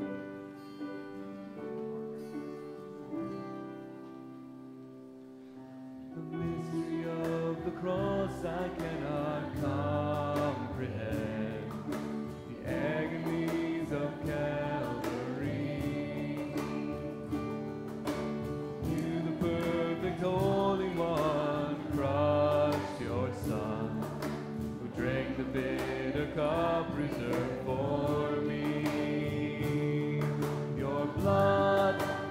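A hymn opens with a quiet instrumental introduction on keyboard. About six seconds in, a group of song leaders and students starts singing the first verse in unison, with instrumental accompaniment that includes sharp rhythmic strokes.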